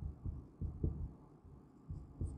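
A felt-tip marker writing on a whiteboard, heard as faint, irregular, dull low thuds as the pen is pressed and lifted against the board.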